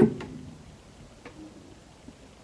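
The tail of a man's spoken word, then quiet room tone with a faint single click about a second in.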